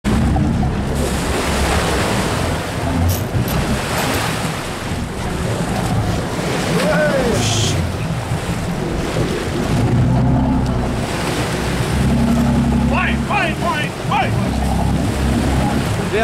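Sea water rushing and splashing with wind buffeting the microphone, over the low steady running of a sportfishing boat's engine, as a hooked blue marlin thrashes at the surface beside the boat. A few short shouted voices come near the end.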